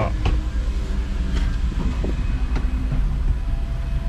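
Steady low rumble of a Chevrolet pickup's engine heard from inside the cab as the truck is put into reverse to back out, with a few faint clicks.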